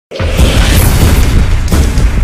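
Cinematic intro music with deep booming bass and rumble, loud from the very start, with a sharp hit near the end.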